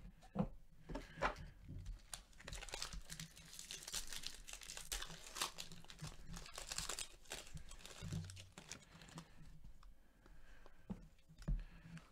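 Foil wrapper of a jumbo pack of baseball cards being torn open and crinkled by hand. A few sharp snaps come in the first second or so, then a dense crackling crinkle is heaviest through the middle seconds.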